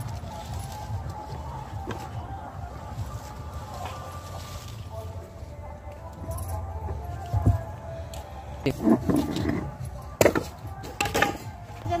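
A low steady rumble with faint background voices, then a few sharp knocks and clatters near the end, like hard objects being handled.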